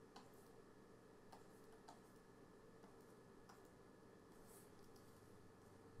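Near silence: faint room tone with a few soft, isolated clicks of the kind made while working at a computer, spread a second or two apart.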